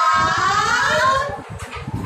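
High women's voices singing an action song in long drawn-out notes that bend in pitch, breaking off about a second and a half in.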